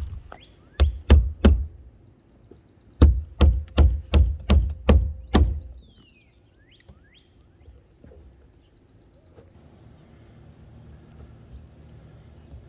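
Claw hammer driving roofing nails: three strikes, a pause of about a second and a half, then about seven quicker, evenly spaced strikes.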